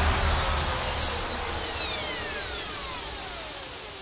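The tail of an electronic dance music track: a falling noise sweep with several tones gliding downward, fading out steadily.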